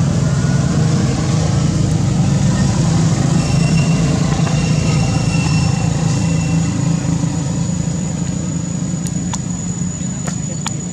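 Loud, steady low rumbling noise, with a faint high whistle in the middle and a couple of sharp clicks near the end.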